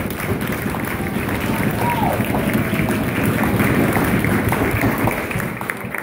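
Audience applauding with crowd voices over it, the applause dying away near the end.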